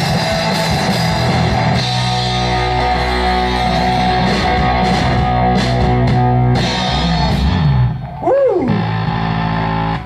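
Live rock band with two electric guitars, bass guitar and drums playing the instrumental close of a song, loud and sustained, with a brief dip and a short rising-and-falling pitch swoop about eight seconds in.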